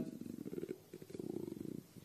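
A man's low, creaky hesitation sound in the throat between words, faint and in two drawn-out stretches.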